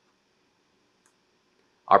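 Near silence with a faint steady hum, a single faint click about a second in, then a narrator's voice starting just before the end.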